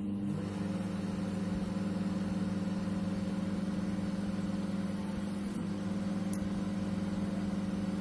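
LG MG-583MC microwave oven running with its cover off: a steady mains hum from its high-voltage transformer and fan. It runs but does not heat, which the technician puts down to a faulty magnetron.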